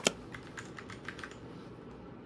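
Typing on a compact backlit computer keyboard: two sharp clicks at the start, then a quick run of lighter keystrokes that stops after about a second.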